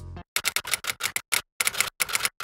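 Guitar background music cuts off, then a quick irregular run of sharp typewriter-style key clicks plays as a text-typing sound effect.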